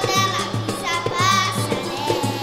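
A young girl singing samba into a microphone over live samba percussion, the drums beating a steady rhythm under her voice.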